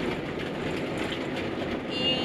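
Steady road and engine noise heard inside the cabin of a moving campervan.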